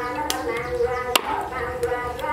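Cleaver chopping through a snake's body on a wooden chopping block: a few sharp chops, the loudest just over a second in.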